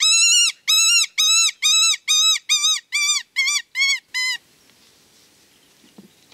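HB Calls reference 73 mouth-blown wounded-rabbit distress call, blown with a vibrato in a run of about eleven high, wavering cries. The cries get shorter, closer together and a little quieter and stop about four seconds in, imitating a rabbit's death agony to lure a fox from long range.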